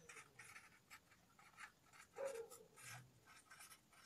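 Felt-tip marker writing on paper: a quick run of short, faint, scratchy strokes as a word is written out.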